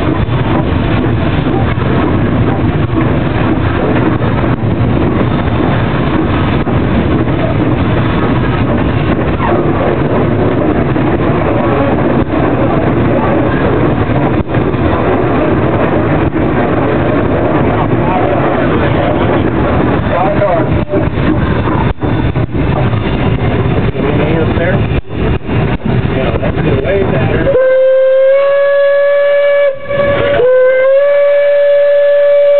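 Steam locomotive heard from inside its cab, running with a loud, steady clatter and rush. Near the end the locomotive's steam whistle blows a long, steady blast.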